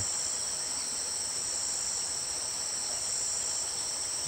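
Insects trilling in a steady, high-pitched chorus that holds level throughout without a break.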